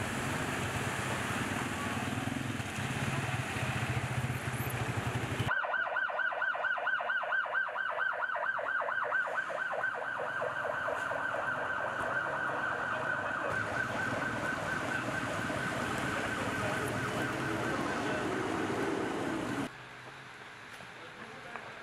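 A steady rumbling noise for about five seconds, then an emergency vehicle siren starts suddenly, wailing in a fast up-and-down warble, and stops just before the end.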